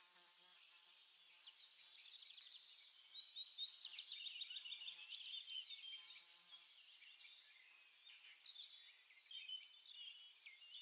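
Faint chirping and twittering of small birds: quick runs of high, short repeated notes that grow busier about two seconds in and thin out again toward the end.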